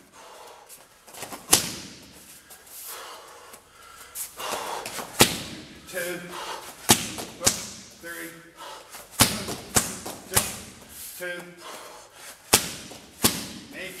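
Strikes landing on Thai pads: about eight sharp smacks at irregular intervals, a second or more apart, with short bursts of voice between them.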